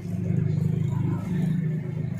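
A bus engine running with a steady low rumble, which gets louder just as the sound begins.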